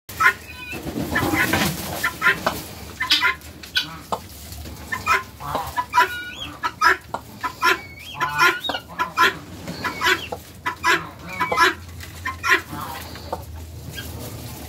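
Fowl clucking: short, repeated calls, about two a second, continuing throughout.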